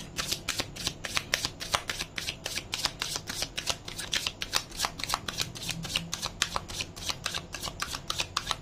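A tarot deck being shuffled by hand: a steady, even run of short card slaps, about five a second.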